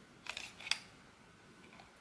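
GoPro HERO12 battery being pulled out of the camera's battery compartment: a few faint plastic clicks and a short scrape in the first second.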